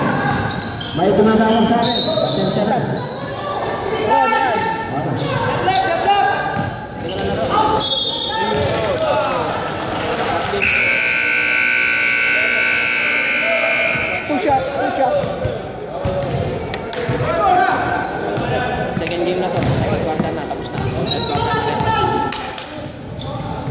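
Gymnasium scoreboard buzzer sounding one steady tone for about three seconds as the game clock runs out to zero, marking the end of the period. Around it, players' voices and a basketball bouncing on the hardwood floor echo in the large hall.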